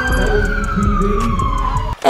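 A siren tone gliding slowly down in pitch, over a low rumble.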